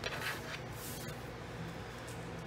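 Hand rubbing over cardstock to press a glued paper piece flat: two brief papery swishes in the first second, then quieter paper handling.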